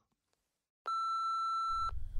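Dead silence, then about a second in a single steady, high electronic beep lasting about a second. A low hum comes in just before the beep stops.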